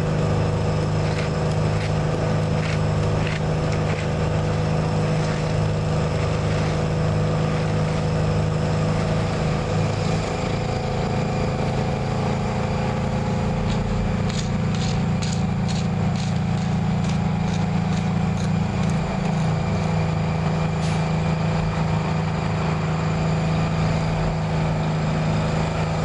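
Heavy machinery engine idling steadily close by, a low constant hum. About halfway through comes a run of light clicks and scrapes, fitting a steel rake working the hot asphalt.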